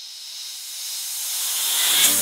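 Synthesized white-noise swell opening a synthwave track, rising steadily in loudness and filling out in range as it builds toward the first beat.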